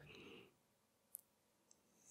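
Near silence: room tone in a pause between words, with one faint, brief click a little over a second in.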